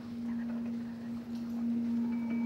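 A single low musical note sounding steadily, a pure ringing tone without speech over it.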